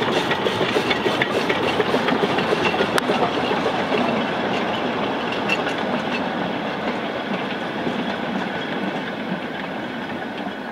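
Narrow-gauge steam locomotive passing with its train: the locomotive's exhaust beats are strongest in the first few seconds, then the coaches' and wagons' wheels clatter over the rail joints, fading steadily as the train moves away.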